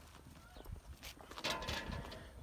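Light footsteps, then a key scraping and clicking into the lock of a metal letterbox's rear door, loudest about one and a half seconds in.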